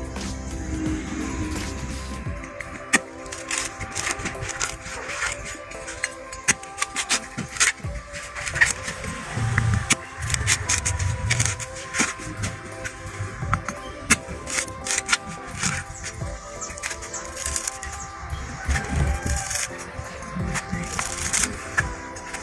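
Background music, with a machete blade chopping and cutting into the fibrous husk of a small coconut: many short, irregular sharp strikes.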